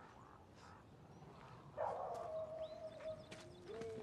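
Dogs howling faintly: one long held note, then a second, lower one that slides up slightly and runs on.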